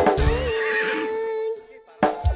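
Live rock band holding one long sustained note over a couple of low bass hits. The sound then cuts out for about half a second near the end, a break in the song before the drums come back in.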